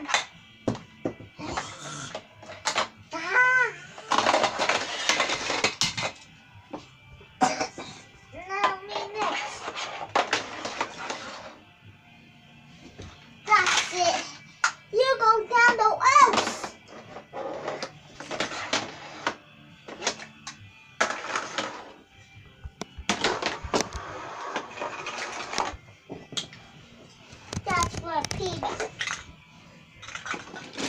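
A child's voice making gliding, sing-song vocal sounds several times, between stretches of clattering and clicking as toy cars roll down a plastic spiral ramp tower.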